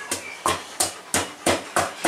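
Wooden pestle pounding in a clay mortar, six dull knocks at about three a second, crushing garlic, coriander root and pepper into a paste.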